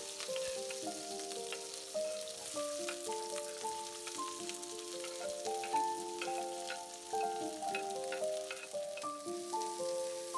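Ginger, green chilli and onion sizzling in hot oil in a nonstick wok, a steady hiss with scattered spitting crackles, stirred with a wooden spatula near the end. A background melody of held notes plays over it.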